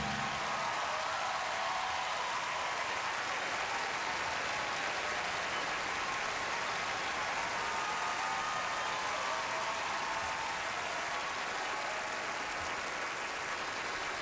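Large audience applauding steadily, with faint cheering voices in the crowd.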